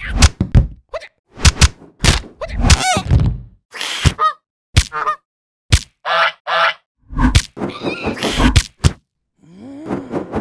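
Cartoon fight sound effects: a rapid string of whacks and thuds mixed with grunts, and two short honking calls about six seconds in, as a man fights off geese.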